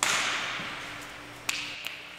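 A hockey slapshot in an ice arena: a loud crack of the stick striking the puck that echoes and dies away slowly, then a short sharp knock about a second and a half in.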